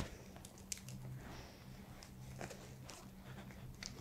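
Faint handling of a manual blood pressure cuff: small clicks and rustles of the cuff, bulb and tubing as it is let down and loosened from the arm.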